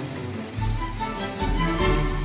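Background music: a melody of held notes over a deep bass that comes in about half a second in.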